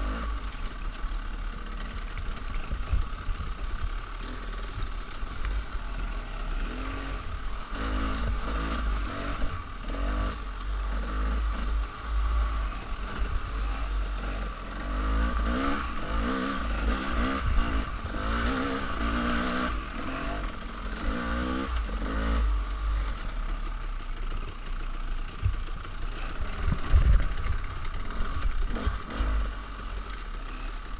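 Dirt bike engine running at low, uneven revs on rough singletrack, the pitch rising and falling as the throttle is worked, with knocks and rattles from the bike over rocks. Heavy wind rumble on the microphone.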